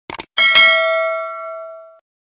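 A quick double click, then a bright bell chime that rings out and fades over about a second and a half: the sound effect of a cursor clicking a notification-bell icon.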